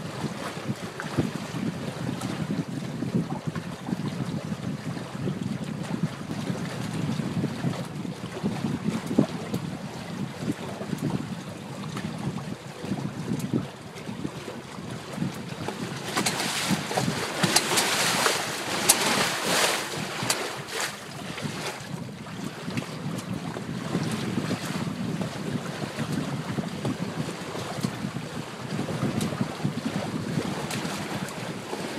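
Wind buffeting the microphone over the rush of water along the hulls of a catamaran under sail. The noise is steady and rumbling, and grows louder and hissier for several seconds about halfway through.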